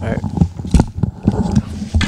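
Handling noise as headphones are pulled off near open table microphones: irregular knocks, thumps and rubbing, with a short spoken 'all right' at the start and brief bits of voice.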